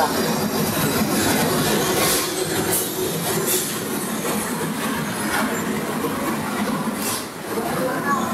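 Machinery of a wood veneer processing line running steadily, conveying thin veneer sheets over rollers: a dense mechanical clatter with a few sharper clicks.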